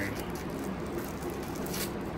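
A plastic lollipop wrapper crinkling faintly as it is pulled open by hand, with a brief sharper crackle near the end.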